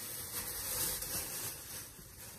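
Rustling of clothing being handled: a garment pulled from the pile and unfolded, cloth rubbing on cloth.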